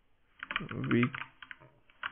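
Typing on a computer keyboard: a quick run of keystrokes starting about half a second in.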